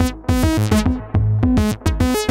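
Eurorack modular synth playing a fast sequenced melody: a Dixie II+ oscillator clocked by a Qu-Bit Octone steps through short pitched notes, about five a second. Underneath runs a Plonk kick drum driven into distortion by a Noise Engineering Kith Ruina.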